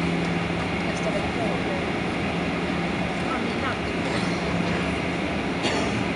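Steady cabin noise of a Boeing 737-800 taxiing on its CFM56 engines at low thrust: an even rushing hum with a low drone that fades out about five seconds in.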